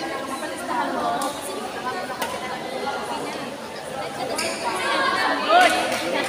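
Spectators chattering and calling out in a large echoing sports hall, with a few sharp ticks of rackets hitting a shuttlecock during a rally. One louder voice rises briefly about five and a half seconds in.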